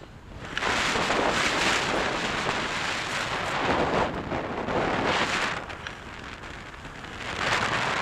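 Wind rushing over a hood-mounted camera on a moving car, mixed with road noise, coming in loud surges: one starting about half a second in and lasting several seconds, another near the end.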